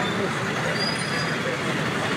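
Busy city street: a steady din of traffic and idling auto-rickshaw engines, mixed with the indistinct chatter of a crowd close by.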